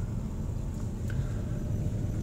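Car cabin noise while driving: a steady low engine and road rumble heard from inside the car.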